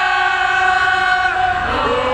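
Live band music over a concert PA: a held note over a chord, which slides down and back up to a new pitch near the end.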